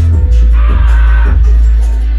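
Live hip hop track played loud through a club PA, with a heavy, steady bass line and a short held tone in the middle, recorded from the audience.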